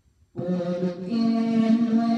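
A woman singing a Spanish-language Christian praise song. Her voice comes in after a short pause, about a third of a second in, and holds long sustained notes.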